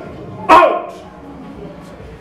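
A woman's single loud, bark-like yelp about half a second in, short and falling sharply in pitch.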